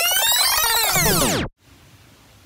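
Synthesized sound effect: a stack of many tones that sweep up and then fall together, cutting off suddenly about one and a half seconds in, leaving faint hiss.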